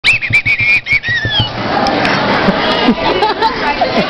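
A teenage boy's high-pitched, horse-like whinnying laugh: a quick run of about six shrill pulses in the first second, ending in a falling squeal. After it, a crowd of voices laughing and talking fills the rest.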